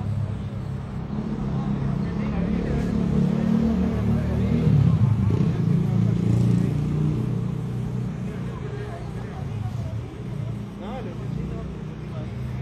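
A motor vehicle's engine running close by, growing louder to a peak about five seconds in and then fading, over indistinct voices.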